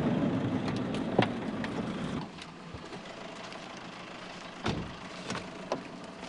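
A vehicle's engine rumbling as people climb out through its open door. The rumble drops away about two seconds in, leaving a quieter background with scattered knocks and a thud a second before the end.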